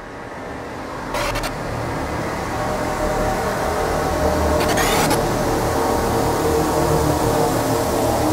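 Intro soundscape, a dense rumbling, noisy bed with a few held tones, that fades in and builds steadily. Two brief swishes cut through, about a second in and near five seconds.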